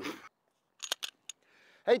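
A few short, sharp clicks, three or four within about half a second, after a brief silence.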